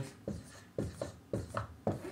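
Dry-erase marker writing numbers on a whiteboard: about five short strokes of the felt tip against the board.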